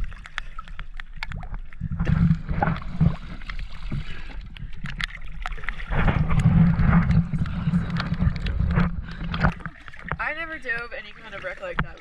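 Seawater sloshing and splashing around a camera held at the surface against a boat hull, in uneven surges. It is heaviest from about two seconds in until a couple of seconds before the end.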